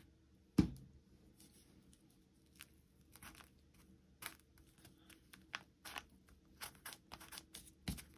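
Faint paper handling: small taps and rustles as fingers press glued paper tabs down onto a paper envelope. There is one louder knock just over half a second in, as a plastic glue bottle is set down on the table.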